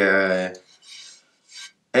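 A man's voice trailing off on a drawn-out word, then two faint, short rustling sounds about a second apart.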